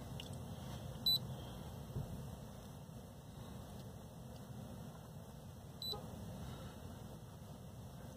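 Two short, high electronic beeps from a handheld OBD2 scan tool as its keypad is pressed, one about a second in and another about five seconds later, over a faint steady low hum.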